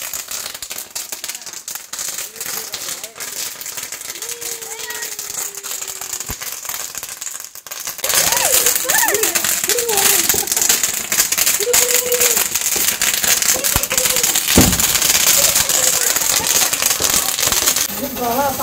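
Firecrackers crackling, a dense run of rapid small pops. About eight seconds in it becomes much louder, adding a steady hiss.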